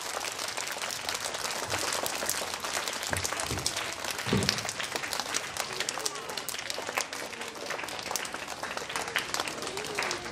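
Audience applauding steadily, a dense patter of many hands, with faint voices under it.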